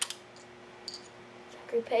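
Small plastic Lego pieces clicking as they are handled and pulled apart: one sharp click at the start, then a couple of faint ticks. A voice starts near the end.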